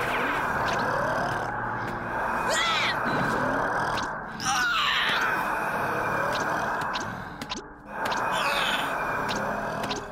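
A giant cartoon cyclops snoring: long rushing gusts of breath, broken twice by short pauses. A character strains and cries out against the blast, and music plays along.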